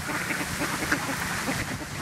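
Ducks quacking in a quick run of short, overlapping calls, over the steady rush of pond fountains.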